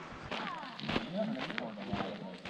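Footsteps on a gravel trail with patches of thin snow, a series of short scuffs and crunches. A brief low vocal sound from the walker comes in about midway.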